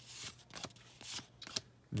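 A stack of Topps Heritage baseball cards being thumbed through by hand: the cardboard cards slide against one another in several soft swishes and flicks as each one is pushed off the pile.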